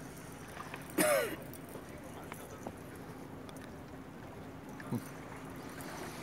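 A short falling vocal sound about a second in, over a low, steady background of outdoor noise with a faint hum.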